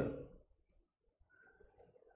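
A man's brief "mm" fading out in the first half-second, then near silence with a few faint, short clicks.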